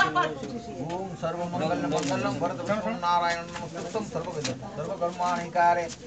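Several people's voices talking over one another in a small room, with some words drawn out on held notes.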